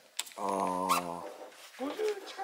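A man's voice holding a low, drawn-out 'mmm' or 'ehh' for just under a second, with a faint click before it. Speech starts again near the end.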